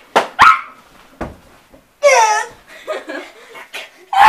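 Children's short sharp yelps during rough play-wrestling: two quick cries at the start, a single thud about a second in, and a longer squeal about two seconds in.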